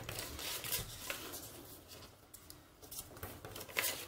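Sheet of origami paper being handled and folded on a cutting mat: soft rustling and sliding, with a few light crisp clicks and a sharper one near the end.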